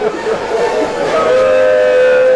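A voice chanting a lament, holding a long, steady, high note near the end, over a jumble of crowd voices in the first second.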